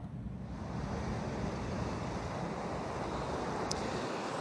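Steady street background noise picked up by a reporter's open microphone outdoors: a low rumble with a hiss over it, of traffic and wind. A brief click comes near the end.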